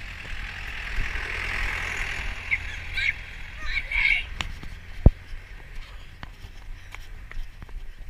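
Wind and handling rumble on a running camera-wearer's microphone, with a few brief voice sounds and a single sharp knock about five seconds in.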